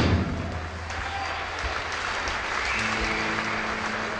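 A live rock band's song cuts off right at the start, and the audience applauds; about three seconds in, held guitar notes begin the next number.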